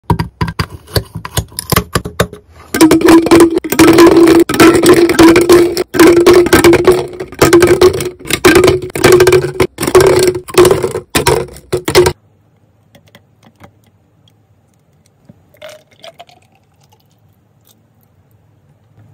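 Light clinks and taps, then a loud, steady-pitched whirring that runs in stretches with short breaks for about nine seconds and cuts off suddenly. It is typical of a small kitchen appliance motor.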